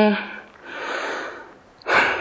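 A woman's drawn-out hesitation vowel breaks off, followed by a long audible breath of about a second picked up close on a lectern microphone; another breath sound begins near the end.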